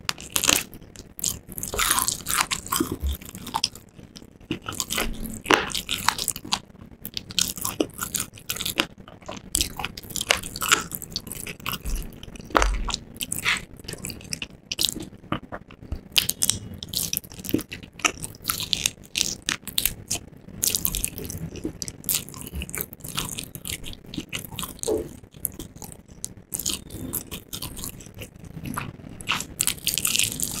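Close-miked biting and chewing of crispy fried chicken: a steady run of irregular sharp crunches and crackles as the breading breaks up in the mouth.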